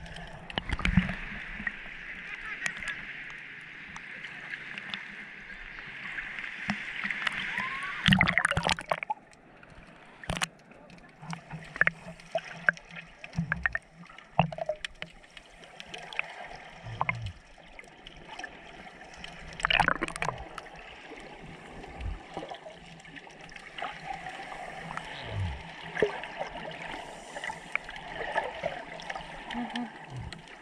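Water sloshing and gurgling around a camera held at and just under the sea surface, with splashes and scattered sharp clicks as it moves. A steady hiss fills the first eight seconds, then comes a loud burst of splashing.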